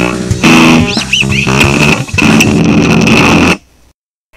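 Amateur rock band playing an instrumental break on electric guitar and bass guitar. The music stops abruptly about three and a half seconds in and the sound drops away.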